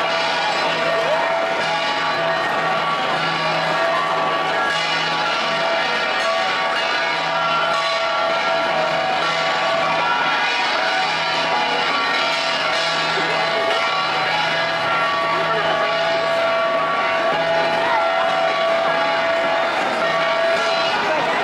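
A gangsa ensemble: handheld flat bronze gongs beaten by the dancers, their metallic tones ringing on continuously, with crowd chatter behind.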